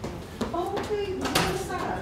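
Indistinct voices talking, with a brief sharp click about one and a half seconds in.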